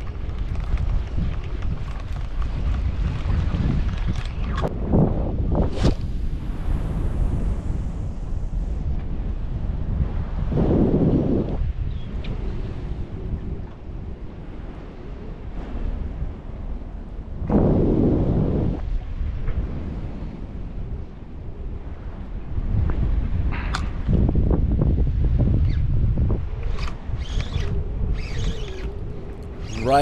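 Wind buffeting the microphone, with the canal's water washing along the rocks. The rumble swells louder a few times, most clearly about a third of the way in and again a little past halfway.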